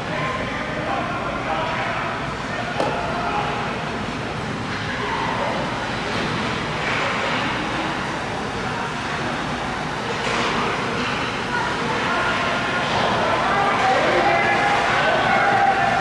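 Ice hockey game in an echoing rink: indistinct shouting and chatter of players and spectators over the scrape of skates, with an occasional clack of a stick. The voices grow louder near the end.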